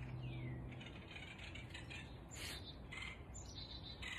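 Faint outdoor birdsong: small birds chirping in short, quick notes, with a descending whistled note right at the start. A low steady hum sounds underneath for about the first second.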